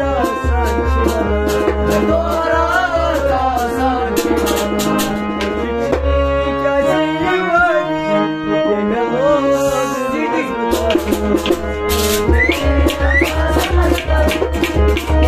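A male voice singing a slow, sad Kashmiri song with wavering ornamented runs, over a harmonium's sustained reed chords and a deep drone, with light rattling percussion clicks.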